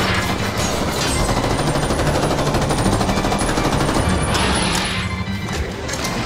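Dense battle sound effects with repeated gunfire and crashes, laid over a dramatic music score that hums steadily underneath.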